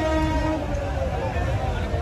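A vehicle horn holding one steady note that cuts off about half a second in, over the chatter and hubbub of a street crowd.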